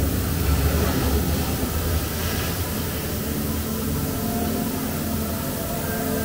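Low, steady rumbling ambient soundscape of an immersive projection room, heaviest in the first two seconds; faint sustained musical tones come in during the second half.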